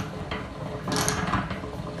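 Hand-cranked three-frame honey extractor being spun: its gear drive rattles steadily as the crank turns the honey frames around inside the stainless steel drum.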